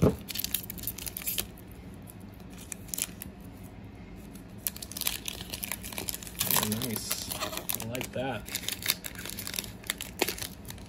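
Foil wrapper of a trading-card pack crinkling and tearing as it is opened, in short spells of sharp crackles near the start and again about halfway through. A person's voice is heard briefly, without clear words, around two-thirds of the way in.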